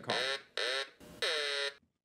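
Mallard-duck novelty telephone ringing for an incoming call: three short ring bursts, each about half a second long.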